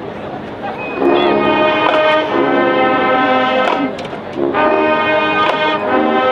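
Marching band brass section playing loud, sustained chords that enter about a second in, with a short break before the next chord swells in. A few sharp hits cut across the chords.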